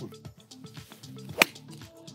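A single sharp click of a golf iron striking the ball on a low punch shot, about one and a half seconds in, over background music.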